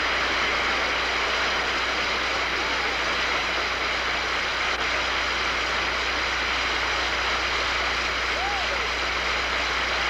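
Studio audience applauding steadily, with a faint voice or whistle rising and falling a couple of times.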